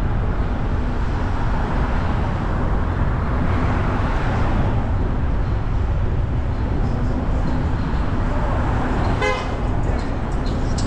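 Steady rumble of road and tyre noise from a car driving in slow city traffic, with a short car horn toot near the end.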